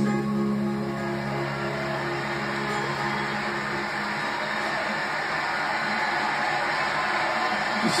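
End of a song on guitar: a held chord rings for about four seconds and fades out, leaving a steady hiss.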